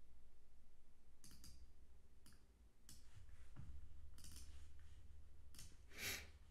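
Faint, scattered clicks of a computer mouse and keyboard, about seven spread across the few seconds, over a low steady hum.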